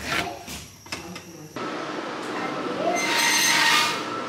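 Watermelon being cut on a bonti, the curved upright kitchen blade, with a few crisp cuts in the first second and a half. Then a steady rushing noise starts suddenly and grows hissier near the end.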